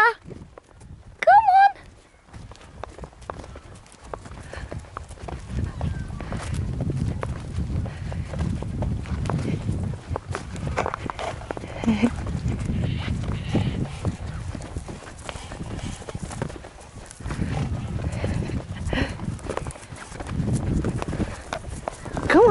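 Horse moving on grass close to the microphone: soft hoof thuds and rustling over a low, uneven rumble, after a brief pitched call about a second and a half in.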